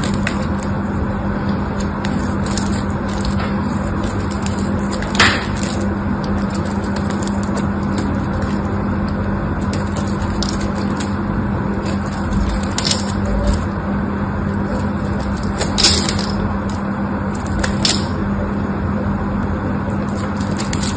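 Craft knife shaving and cutting into a dry bar of soap: scraping and crackling as flakes break off, with a few sharper cracks, the loudest about five seconds in. A steady low hum and hiss lies underneath.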